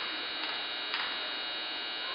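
Basketball gymnasium ambience: a steady hum fills the hall, with two short knocks about half a second and a second in.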